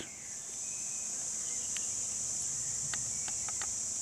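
Steady high-pitched insect chorus in summer woodland, a constant buzzing drone, with a few faint short chirps midway.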